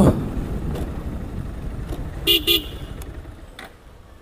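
A motor vehicle's engine rumble fading as it moves away. A short double horn beep comes a little past halfway.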